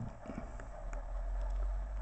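Handling noise from a trading card and its plastic sleeve being moved close to the microphone: a few faint clicks, then a low rumble that grows in the second second.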